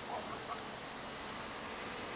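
Outdoor ambience: a steady hiss of background noise, with a couple of faint short sounds in the first half second.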